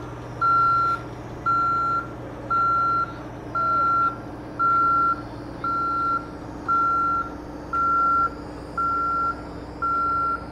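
A backup-style warning alarm on the lifting machinery sounds a steady single-tone beep about once a second, signalling that the equipment is moving. A steady low engine drone runs underneath.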